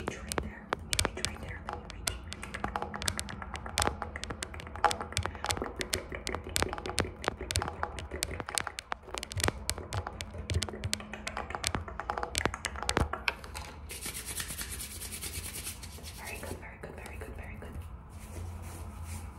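Fast, irregular tapping of fingernails and finger pads close to the microphone, then about fourteen seconds in a few seconds of steady scratching on fabric, a knit sweater.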